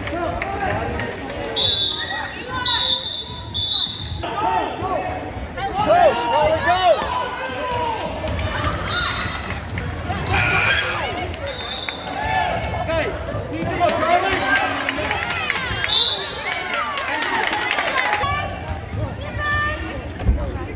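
Basketball bouncing on a gym's hardwood floor during play, with repeated sharp bounces and short high squeaks, amid the voices of players and onlookers.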